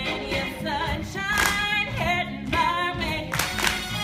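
Stage cast singing a musical number over instrumental accompaniment, several voices with vibrato on held notes.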